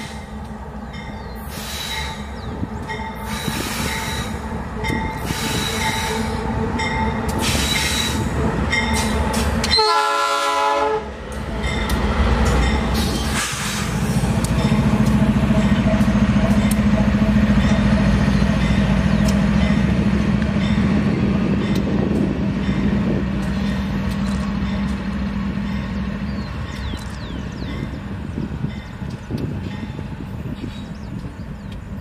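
Two GE/Wabtec AC44i diesel-electric locomotives. In the first third there is a series of short horn toots. Then, after a brief break in the sound, the locomotives' engines give a deep steady drone that swells as they pass close and slowly fades as they pull away.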